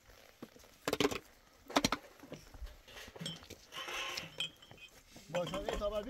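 Stones knocking together in hand, two sharp clacks a little under a second apart, then a short scraping rattle of rock.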